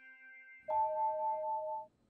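Smartphone ringing with an incoming call: a two-note ringtone chime that starts just under a second in and holds for about a second, over the fading last notes of the score.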